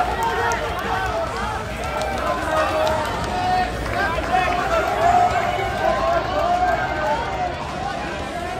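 Spectators yelling and cheering on runners during an indoor track race, many voices shouting over one another.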